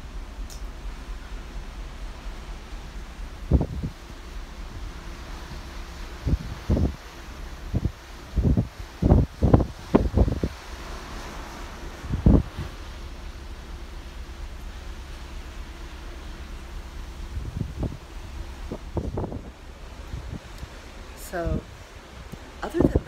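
Wind blowing across the microphone over a steady low rumble and hiss, with a run of strong gusts buffeting it in the middle and a few more later on.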